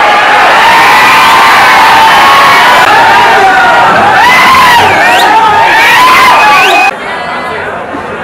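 A dense crowd of fans cheering and shouting, loud and unbroken, with a few sharp rising shrieks near the end. It cuts off abruptly about seven seconds in, leaving quieter chatter.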